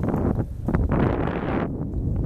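Wind buffeting the camera microphone: an uneven low rumble, with a stronger hissing gust about a second in.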